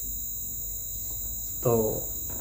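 A pause in a man's talk, filled by a steady high-pitched drone and a faint low hum. He speaks a single word near the end.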